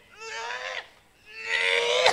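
Two long, high-pitched wailing cries from a person's voice, each held at a nearly steady pitch for well under a second, with a short gap between them.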